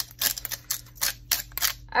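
Hand-held spice mill grinding seasoning over a bowl: a quick run of dry crunching clicks, about four a second.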